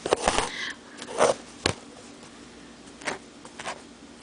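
A few soft, brief rustles and one sharp click from hand embroidery: a needle and thread drawn through fabric stretched in a wooden embroidery hoop.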